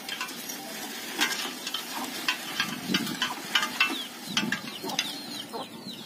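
Irregular light clicking and rattling from a small hand-pushed groundnut seeder's chain drive and seed-metering plates with groundnuts in the hopper.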